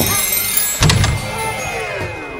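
Background soundtrack music with a sudden hit a little under a second in, followed by several falling, sweeping tones, like a produced swoosh sound effect.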